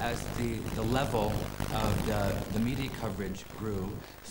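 A man speaking in an interview, over a low steady drone.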